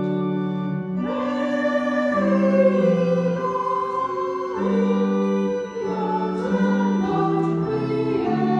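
Small choir singing a slow melody in sustained notes, the pitch changing about once a second.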